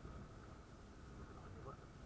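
Faint, muffled, steady rumble of a Honda Wave 125 motorcycle riding along a street, with wind on the microphone.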